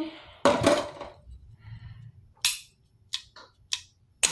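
Clear plastic claw clips clacking as they are handled: a short rattle about half a second in, then a few sharp separate clicks in the second half.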